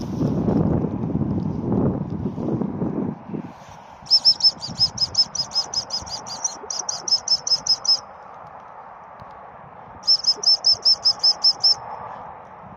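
A songbird singing a rapid run of short, high, repeated notes, about six a second, in two bouts: one of about four seconds with a brief break, then one of about two seconds near the end. Before that, a rustling noise fills the first three seconds.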